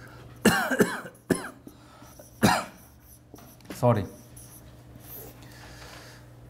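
A man coughing: about four short, loud coughs in the first two and a half seconds, followed by a spoken apology.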